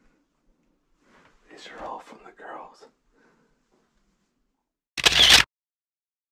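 A camera shutter click, loud and under half a second long, about five seconds in, marking a cut to still photographs. A low murmured voice comes before it.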